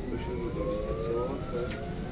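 Electric city bus's drive motor whining inside the passenger cabin, its pitch rising steadily as the bus accelerates, over a low road rumble.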